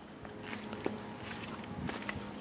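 Faint footsteps on a brick-paver driveway, with a few soft clicks.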